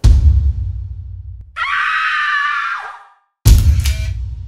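A deep boom hit that dies away, then a person screaming for about a second and a half, the scream falling off at the end, and a second deep boom hit near the end.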